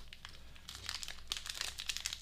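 Plastic snack-bar wrapper crinkling softly as it is handled and turned over in the hands, the crackles coming thicker after the first second.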